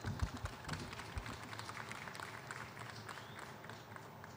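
Audience clapping after a speaker is introduced, many quick hand claps that thin out toward the end, with a few low thumps in the first second or so.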